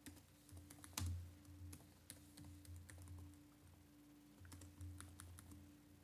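Faint typing on a computer keyboard: an uneven run of key clicks, one louder about a second in, over a low steady hum.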